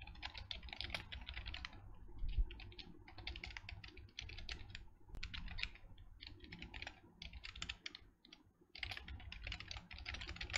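Fast typing on a computer keyboard: keys clicking in quick runs, with a short pause near the end.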